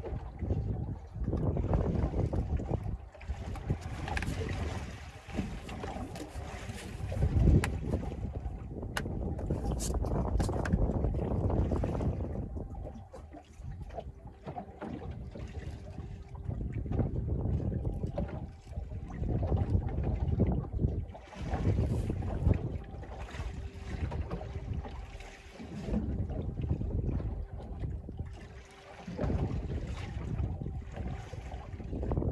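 Wind buffeting the microphone in uneven gusts over the wash of the sea around a small open boat, with a faint steady hum in the background.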